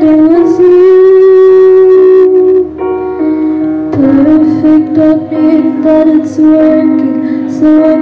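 A live song: a female singer holding long notes over electric keyboard accompaniment, with a brief dip about three seconds in before the voice returns.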